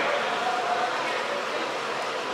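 Steady background hiss of room noise in a large hall, with a faint voice heard briefly early on.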